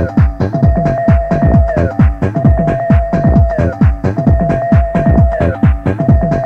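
Early-1990s electronic dance music from a club DJ set: a fast, steady beat of deep drum hits that fall in pitch, under a held synth note that swoops downward, the phrase repeating about every two seconds.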